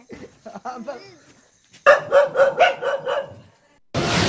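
A dog barking at a crocodile: a rapid run of about seven barks, beginning about two seconds in and lasting a second and a half.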